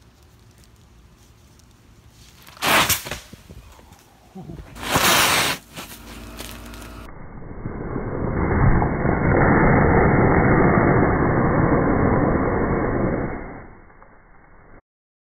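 Liquid nitrogen pouring from a plastic bottle onto gravel and boiling off, a steady rushing hiss that builds over about two seconds and fades near the end. Earlier come two short, loud bursts of rushing noise.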